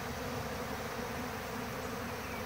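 A steady hum of a large crowd of honey bees swarming open sugar-water bucket feeders. They are feeding heavily, which the beekeeper takes as a sign of hungry bees in a nectar dearth.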